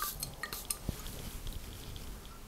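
A quick, light spray from a glass perfume atomiser near the start, then a few small clicks and clinks of the glass bottle being handled.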